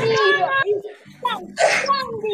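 Voices on a video call, including a child's voice, with a short breathy burst of noise about a second and a half in.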